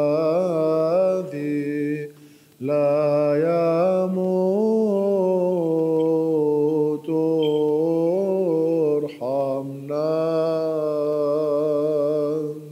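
Byzantine chant from the Orthodox liturgy: a male voice sings long, melismatic held notes, pausing briefly for breath a few times.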